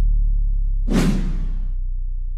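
Whoosh sound effect from an animated intro about a second in, lasting under a second, over a deep sustained synth tone that slowly fades.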